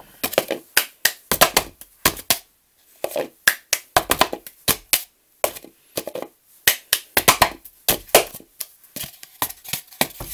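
Cup-song rhythm: hand claps mixed with a white foam cup being tapped, lifted and knocked down on a wooden table. The claps and knocks come in short runs, broken by brief pauses.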